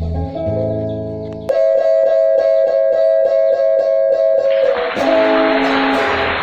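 Electric guitars and an electric bass playing an instrumental together: held melody notes over a quick, even rhythm of about four or five strokes a second through the middle, with a hiss coming in near the end.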